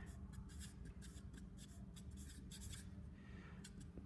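Marker pen writing on paper: a faint, quick run of short scratchy strokes as a line of figures and symbols is written out.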